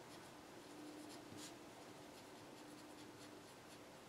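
Faint scratching of handwriting on paper, the writing tool moving in short strokes, over a faint steady hum.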